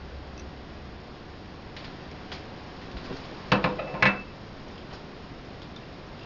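Glass dishware being handled: a few faint clicks, then two sharp clinks about half a second apart midway, the second with a brief ringing tone.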